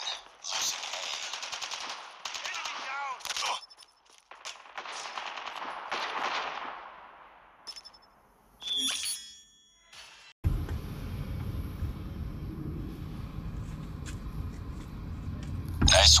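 Rapid automatic gunfire from a mobile military first-person shooter game for the first several seconds, fading out, followed by brief chimes. About ten seconds in, a steady low rumble starts abruptly.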